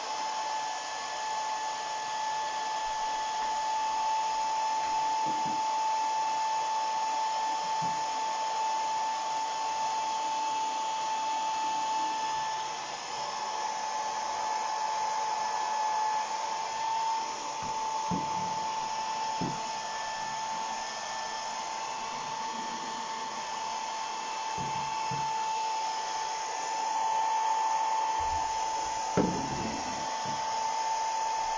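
Handheld electric hair dryer running steadily, a constant whine over rushing air, with a few light knocks now and then.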